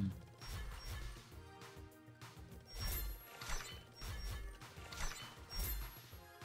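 Online slot game sound effects: a string of short clicks and clunks as symbols drop onto the reels during a bonus spin, with a brief held synth tone about two seconds in and faint game music.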